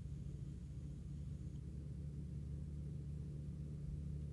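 Faint steady low rumble of outdoor background noise, with a thin high whine that stops about a second and a half in.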